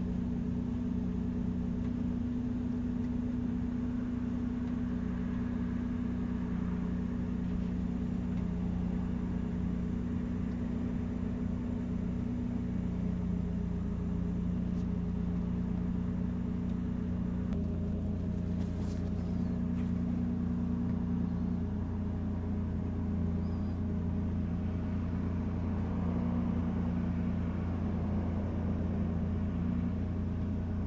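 A steady low mechanical hum with several held tones, changing slightly about seventeen seconds in.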